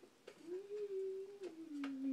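A person humming a long closed-mouth 'mmm', held level and then stepping down in pitch near the end, with a single click near the end.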